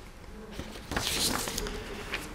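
Loose sheets of paper rustling close to a microphone as they are handled, with a sharp click just under a second in.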